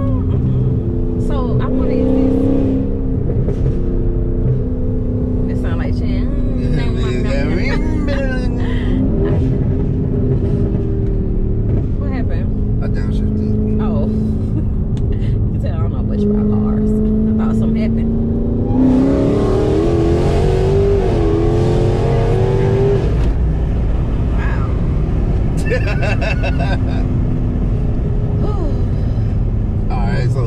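Cabin sound of a modified Dodge Hellcat's supercharged 6.2-litre V8 driving at steady speed, its engine drone shifting in pitch. About 19 seconds in it rises in pitch and gets noisier under acceleration for a few seconds, then settles back.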